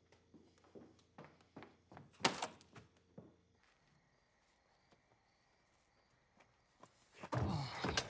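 Footsteps on a hard floor, about two to three a second, with a sharper, brighter clatter about two seconds in. Then a hushed stretch with a faint steady high tone, and a sudden loud thunk and bustle near the end.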